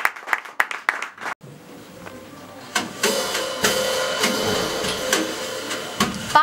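Applause tails off in the first second or so. From about three seconds in, a live jazz trio starts playing softly: sustained chords with a cymbal shimmer over them.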